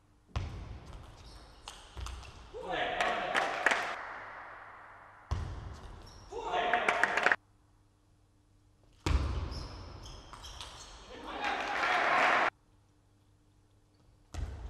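Table tennis rallies: the ball clicks back and forth off bats and table, and shouting voices follow the points. The sound is reverberant, as in a large hall. It cuts in and out abruptly three times.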